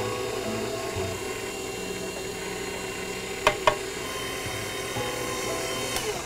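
Electric stand mixer running on low, a steady motor whine, as hot coffee is poured into the batter. Two brief knocks sound about three and a half seconds in.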